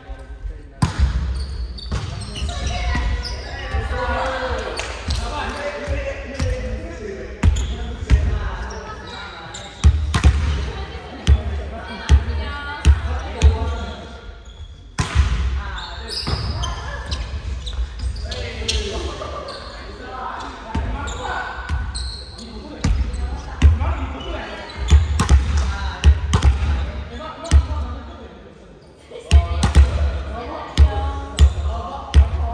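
Volleyball play in an echoing gym: a ball struck by hands and hitting the wooden floor again and again, sharp smacks scattered through, with players shouting calls to each other.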